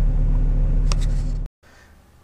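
A car's interior driving noise: a steady low rumble of engine and road, with two short clicks about a second in. It cuts off abruptly about one and a half seconds in, leaving only faint room tone.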